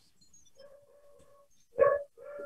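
A faint, steady, high-pitched animal whine, then a short, louder cry of the same pitch near the end.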